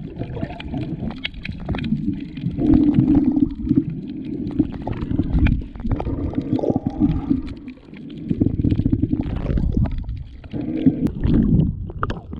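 Muffled underwater rumbling and water movement picked up by a submerged camera, swelling and fading every couple of seconds as the swimmer moves, with many small clicks and knocks scattered through it.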